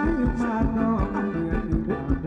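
Thai ramwong dance music from a live band, with a steady drum beat under a sustained melody.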